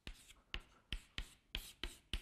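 Faint handwriting strokes: about six short, sharp taps and scratches over two seconds as a line of working is written out.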